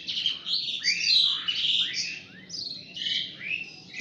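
Several small birds chirping in a dense, continuous chorus of overlapping short chirps and sweeping calls.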